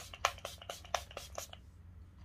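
A pump bottle of Revolution makeup fixing spray spritzing a fine mist in a rapid run of short sprays, about six a second. It stops about a second and a half in.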